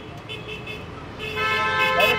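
Vehicle horn sounding in street traffic: a couple of fainter short toots, then one louder steady toot of nearly a second near the end.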